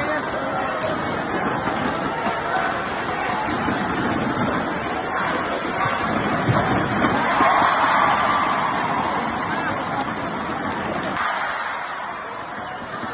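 Crowd of spectators chattering in a large indoor arena while the lights are out during a power cut: a continuous babble of many voices that swells a little past the middle, then drops abruptly near the end.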